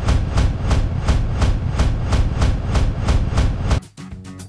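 A rapid, steady clacking, about five or six strikes a second, over a heavy low rumble, ending abruptly near the end. It is an edited-in sound effect resembling a train's clickety-clack.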